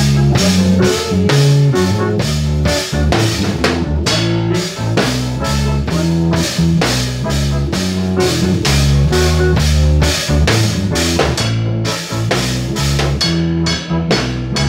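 Live band playing: an acoustic drum kit keeps a steady beat under electric guitars, with sustained low notes beneath.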